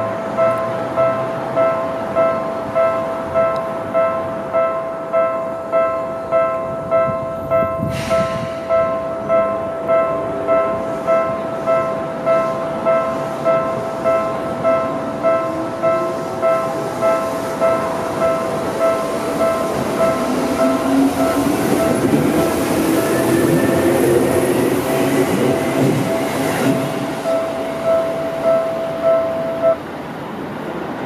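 A railway level-crossing bell rings steadily at about 1.4 strikes a second and stops just before the end. A Seibu 2000-series electric train passes over it: a rising motor whine builds in the second half, with louder running noise from the wheels on the rails.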